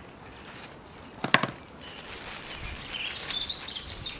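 A single sharp knock about a second in, a mobile phone set down on a wooden table, then faint bird chirping near the end.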